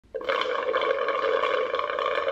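A long, steady slurp through a drinking straw from a stainless-steel tumbler, starting a moment in.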